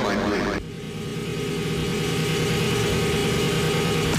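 Techno DJ mix at a breakdown: sweeping pitch glides in the first half-second, then the kick drum is gone and a held, droning synthesizer chord with low sustained tones swells slowly in level.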